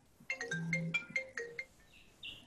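A short electronic ringtone melody of about ten quick, plucked-sounding notes at changing pitches, starting a moment in and stopping after about a second and a half.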